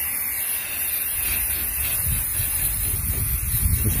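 Aerosol spray paint can spraying camouflage paint onto sheet metal: a steady hiss, with a low rumble underneath.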